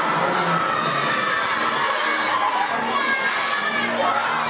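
A large crowd of children shouting and cheering together, many voices at once at a steady level.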